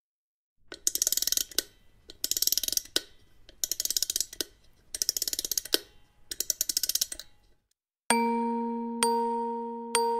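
A wind-up music box's ratchet being wound: five short bursts of fast clicking, then from about eight seconds a chime-like note struck about once a second, ringing and fading, as the lullaby begins.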